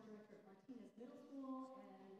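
A choir singing faintly, with long held notes sliding from one pitch to the next.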